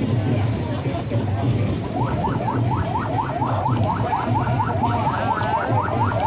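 Electronic police siren in yelp mode: a fast run of rising wails, about four a second, starting about two seconds in, over crowd chatter and a steady low hum.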